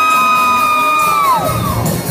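A live rock band: a singer holds one long high yelled note that slides down and breaks off about a second and a half in, as the drums and guitars come in underneath.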